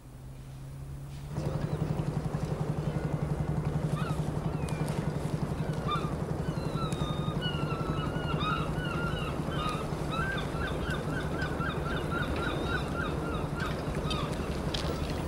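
A steady low engine-like drone with a fast, even pulse sets in about a second in. Birds start chirping over it a few seconds later, ending in a quick run of repeated chirps.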